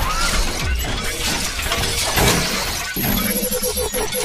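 Sound effects of an animated logo intro: dense crashing, shattering hits over a low rumble. About three seconds in, a ringing tone with a rapid pulse joins them.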